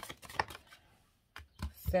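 Tarot cards handled and a card drawn from the deck: a few light clicks and taps, with a short quiet gap in the middle.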